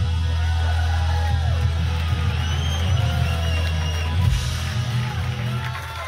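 Live rock band holding the closing chord of a song: a deep bass note sustains steadily under sliding, gliding guitar lines.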